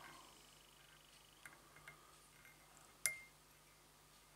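Near silence while thread is wound from a bobbin holder onto a hook in a fly-tying vise: a few faint ticks, then one sharp click with a brief ring just after three seconds in.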